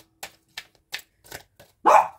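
A deck of oracle cards being shuffled by hand: about six short, soft slaps of cards against cards, irregularly spaced over a second and a half.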